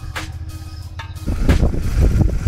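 Royal Enfield Super Meteor 650's parallel-twin engine running steadily while riding. About halfway in, a loud, rough low rumble of wind on the microphone comes up over it.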